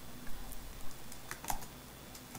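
A few separate keystrokes on a computer keyboard, the last and loudest about one and a half seconds in, as a terminal command is entered and confirmed.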